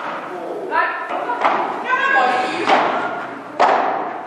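Padel rackets striking the ball in a rally: three sharp knocks about a second apart, the last one the loudest, ringing a little in a large hall.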